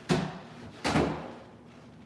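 Two heavy thuds about three-quarters of a second apart as a balance-board deck strikes the training rail and then lands on the floor mat, the second with a brief scraping tail.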